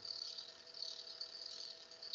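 SpinRite arrow cresting machine running, spinning an arrow shaft: a faint steady hum with a thin, high hiss.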